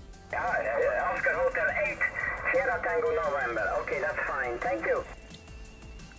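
A voice received over single-sideband on an HF amateur radio transceiver, thin and band-limited with no bass, lasting about five seconds and cutting off shortly before the end.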